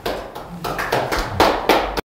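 Handling noise close to the microphone: a run of irregular taps and rustles, as things are moved about, cutting off abruptly at the end.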